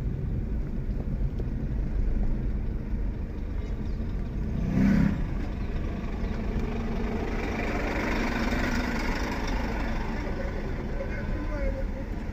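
Steady low engine and road rumble of a car driving slowly through street traffic, heard from inside the cabin, with a lorry passing close alongside. A short, louder sound comes about five seconds in.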